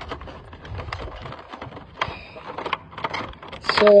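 Cardboard box and plastic packaging being handled: an irregular run of small crinkles, scrapes and taps as a toy figure is worked out of its box by hand.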